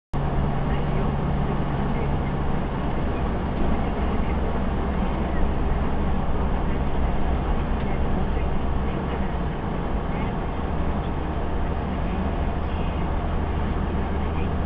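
Toyota Land Cruiser 70 driving at a steady cruise, its engine and tyre noise a steady low drone heard from inside the cabin through a dashcam's microphone. The sound cuts in suddenly at the start.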